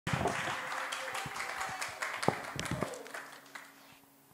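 Audience applause, dense clapping that thins out and fades away in the last second or so.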